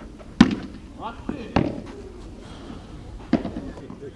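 A padel ball struck with a padel racket and bouncing on the court: three sharp knocks, the first the loudest, with a couple of fainter ones between.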